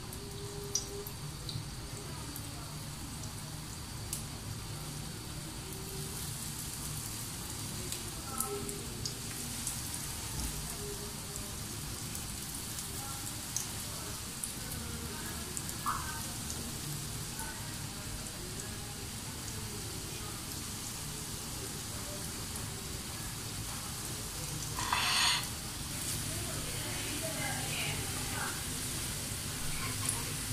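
Breaded aloo chicken cutlets sizzling as they shallow-fry in hot oil, with scattered crackles. The sizzle grows stronger as more cutlets go into the pan, and there is a brief louder hiss about 25 seconds in.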